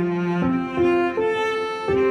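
Slow, gentle instrumental relaxation music carried by sustained bowed-string notes, with a new note starting roughly every half second.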